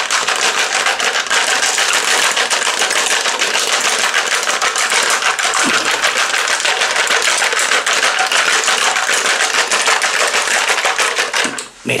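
Ice rattling hard inside a glass-and-metal cocktail shaker, shaken vigorously to chill the drink. The clatter is fast and continuous, then stops just before the end.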